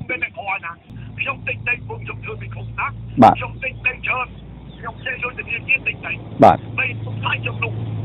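Fast speech, most likely news narration, over a steady low hum like a moving vehicle's that starts about a second in. Two sharp pops, about three seconds apart, are the loudest sounds.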